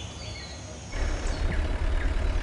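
Forest ambience with birds chirping. About a second in, the low, steady running of a jeep's engine comes in beneath the birdsong.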